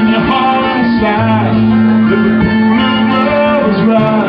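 Live guitar-led band music over a steady low note: an instrumental stretch of the song without sung words.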